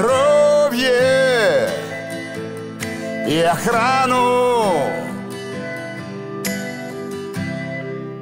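Russian pop song: two long held sung notes with vibrato, each sliding down at the end, over a steady band backing, which carries on alone for the last few seconds.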